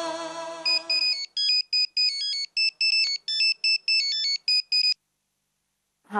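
Phone ringtone: a quick melody of short electronic beeps that lasts about four seconds and stops abruptly. The sustained tones of the background music score fade out under the first beeps.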